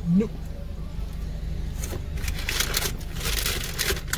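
Steady low hum of a car idling, heard inside the cabin. From about two seconds in comes a run of crackly scrapes as a plastic spoon digs ice cream out of a cup.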